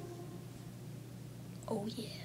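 Quiet room tone, then a short gliding vocal sound from a child near the end.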